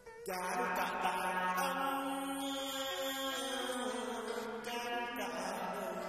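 A voice chanting a Vietnamese poem in long held notes over instrumental accompaniment, in the style of ngâm thơ poetry chanting; it begins about a third of a second in.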